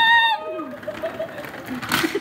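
A woman's high-pitched scream rising in pitch and breaking off about half a second in, followed by a fainter cry falling in pitch; a sharp click near the end.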